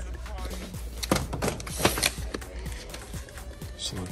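Cardboard product boxes knocking and sliding against one another and a metal shelf as they are pulled off and handled, a run of sharp clacks and taps over background music.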